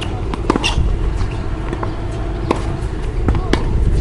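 Tennis balls being struck and bouncing on a hard court: a few sharp pops, the loudest about half a second in, two to three seconds in, and near the end, over a steady low rumble.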